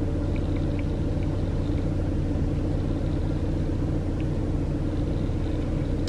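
Car idling, heard from inside the cabin: a steady low hum with no change in speed, and a few faint light ticks.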